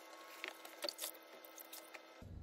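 Faint squishing and splashing of water as a dirty foam dirt-bike air filter is scrubbed and squeezed by hand in a tub of warm water to wash the mud out, with a few soft splashes around the middle.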